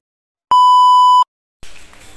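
A single steady electronic beep, a high pure tone lasting under a second, edited into the soundtrack with dead silence cut in before and after it.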